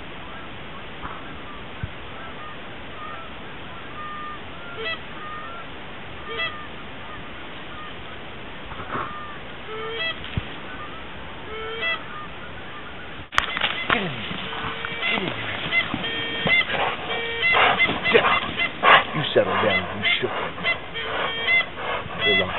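Geese honking: scattered single honks at first, then, after a sharp click about 13 seconds in, many overlapping honks from a flock calling together.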